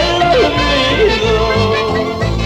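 Andean folk band music: a held, wavering melody line over a steady, pulsing bass.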